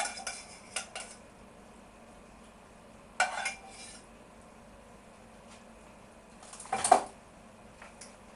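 A metal saucepan clinking and clattering against china dinner plates as carrots are dished out: a few short clinks just after the start, another cluster around three seconds in, and the loudest near seven seconds.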